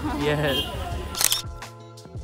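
A camera shutter click about a second in, over background music.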